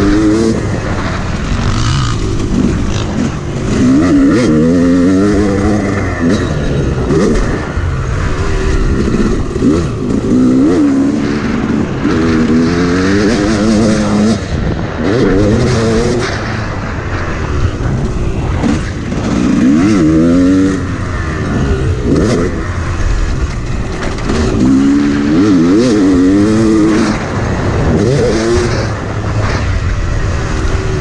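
Yamaha YZ250X two-stroke dirt bike engine ridden hard on a motocross track. The engine revs climb and fall again and again as the rider accelerates and shifts, over steady rushing wind.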